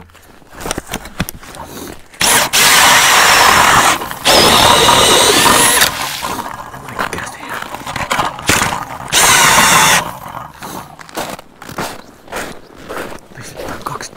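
A power-driven ice auger boring through lake ice with a motor whine, in three runs that start and stop sharply: about two seconds in, straight on again about four seconds in, and a shorter one about nine seconds in. Clicks and knocks of handling come in between.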